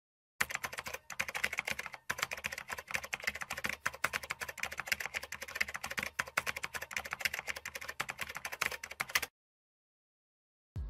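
Computer keyboard typing sound effect: a rapid, dense run of key clicks with brief pauses about one and two seconds in, stopping shortly before the end.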